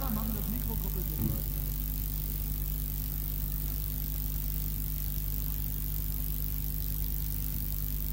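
Steady low electrical hum with an even hiss from the live stage amplification and the old recording, idling between songs; a voice is heard briefly at the very start.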